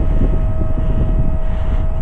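Wind rumbling and buffeting on the microphone, uneven and loud, with a thin steady whine running underneath.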